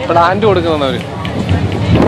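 Mostly speech: a person talking, with faint background music underneath.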